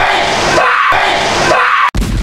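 A man screaming in fright: one long, loud scream that cuts off abruptly near the end.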